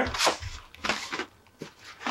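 Plastic packaging being handled: a few short rustles and scrapes as a black plastic tray holding a wrapped action figure is pulled out of its box, then quieter near the end.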